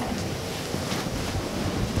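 Steady hiss of background room or microphone noise, with a few faint soft rustles.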